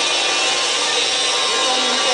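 Vacuum pump running with a steady, even mechanical noise while it holds the test rig under vacuum.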